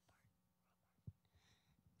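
Near silence with a faint whisper near the lectern microphone and a single soft thump about a second in.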